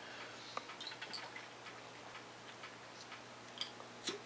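Quiet sipping from a glass ramune bottle, with a few faint, irregular light clicks.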